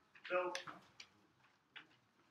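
A man's voice says "So," and then a few isolated, sharp clicks follow, spaced out across the next second or so, from the lectern computer being operated.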